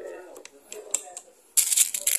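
A Marauder PCP air rifle fitted with a large suppressor, firing during an accuracy test. Near the end come two short, sharp hissing bursts about half a second apart, after a few small clicks.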